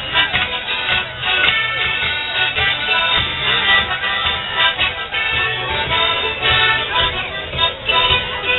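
Live traditional morris dance tune led by an accordion, playing over a steady beat.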